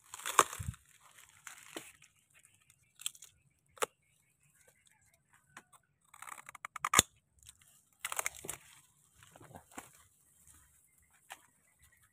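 Dry coconut palm stems and husk fibre rustling and crackling as hands work through a bunch of coconuts on the palm, with sharp cracks about 4 and 7 seconds in.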